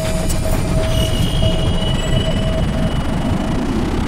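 Cinematic trailer sound design: a dense, low rumbling noise swelling slowly, with a thin steady high tone entering about a second in.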